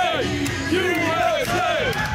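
Music with loud voices singing along, over a cheering street crowd.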